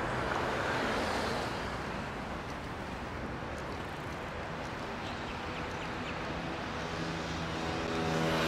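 Road traffic at a city intersection: a car passes close in the first second or so, then a steady traffic hum, and a motor scooter's engine draws nearer near the end.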